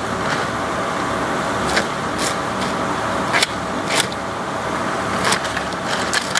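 A steady mechanical background noise, like a running engine, with about five sharp clacks of hard plastic scrap knocking together as a stuffed sack of waste plastic is handled.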